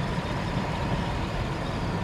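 1971 Chevrolet Chevelle SS with a big-block V8, heard from inside the cabin while cruising at about 60 to 70 mph: a steady blend of engine and road noise.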